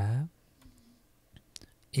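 A man's drawn-out spoken syllable fading out just after the start, then a few faint, sparse clicks from the on-screen pen tool being used to underline the text, before his speech resumes near the end.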